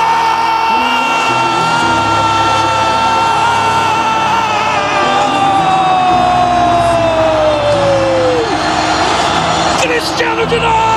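A commentator's long drawn-out goal cry, a single held "Gooool" that slides slowly down in pitch and breaks off about eight and a half seconds in, over background music.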